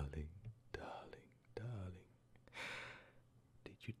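A man's low voice making short breathy murmurs and whispered sounds, with one longer breathy, unvoiced stretch a little past the middle, before he starts speaking near the end.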